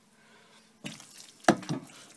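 Spoon stirring a thick, wet corn and barley-malt whiskey mash in a metal pan: wet squelching and scraping start about a second in, with one sharp knock, the loudest sound, about halfway through. The mash is starting to loosen and turn liquid as the malt enzymes break down its starch.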